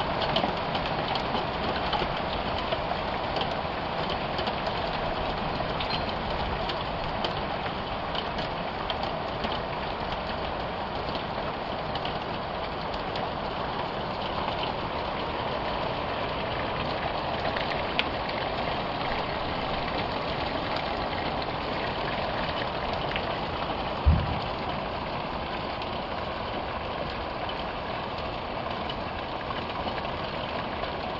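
Steady rain falling and pattering on the ground and surfaces, with one dull thump about 24 seconds in.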